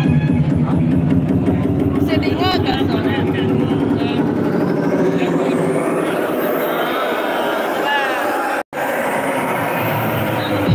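Loud electronic dance music over a club sound system. The beat thins out while a rising sweep builds over several seconds, with voices calling out over it. The sound cuts out for an instant near the end.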